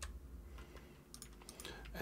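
Faint computer keyboard keystrokes: one click at the start, then a short run of several clicks near the end.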